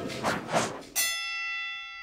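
Two quick whooshes, then about a second in a single struck bell-like chime that rings on and slowly fades: an edited transition sound effect under an animated title card.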